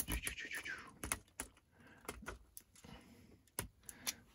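Small LEGO plastic parts clicking and rattling as they are handled and snapped into place on a toy rover, a string of irregular sharp ticks with a brief rustle near the start.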